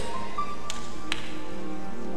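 Soft background church music of held keyboard chords, steady throughout, with two sharp taps a little under half a second apart near the middle.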